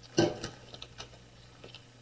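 Faint light ticks and taps of hands handling a sheet of white vinyl and a pen on a cutting mat, after one short louder sound just after the start.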